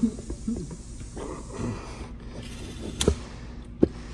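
Two sharp knocks about a second apart near the end, from the Onewheel hub motor and tyre being handled on the workbench. Low murmured voices and a short laugh come early on.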